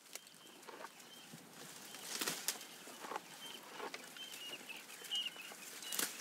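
Faint nature ambience: short, high bird chirps over a soft hiss, with scattered clicks and rustles.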